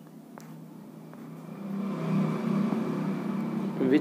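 Low rumble of a motor vehicle, growing louder from about a second and a half in and staying up.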